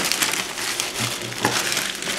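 Plastic courier mailer bag crinkling and crackling as it is handled and squeezed, a continuous run of crisp rustles.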